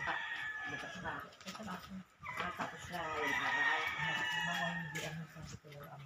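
Roosters crowing: one long crow trailing off about a second and a half in, then another long crow lasting about three seconds.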